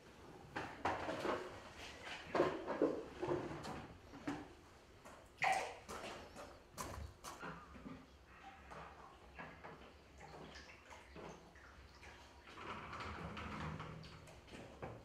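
Water dripping and splashing lightly as it is flicked by hand onto a wet sheet of washi paper pulp, a run of small irregular drips and taps.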